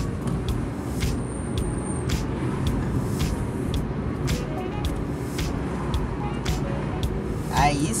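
In-cabin noise of a Fiat Uno Mille driving along a road: a steady engine and tyre rumble, with light ticks about twice a second.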